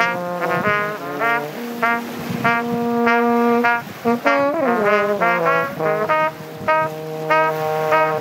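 Trumpet and French horn playing a blues duet. One voice holds long low notes while the other plays shorter, quicker notes above it, with a downward slide about halfway through.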